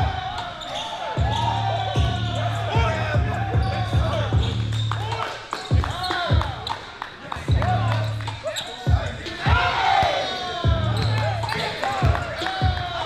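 A basketball dribbled on a hardwood gym floor, bouncing again and again at an uneven pace, among shouting voices.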